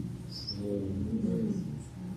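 A person's faint drawn-out murmur or hum, about a second long, with a short high squeak just before it.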